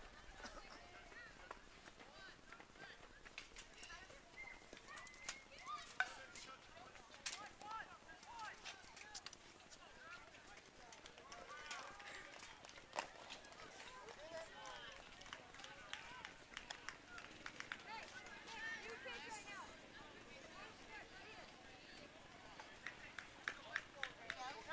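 Faint, distant chatter and calls from players and spectators around a baseball field, with a few sharp clicks scattered through it.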